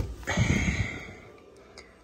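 Tin cans and food packets being handled on a wire pantry shelf as a can is taken down: a brief rustle and knock, loudest at the start, fading out over about a second and a half.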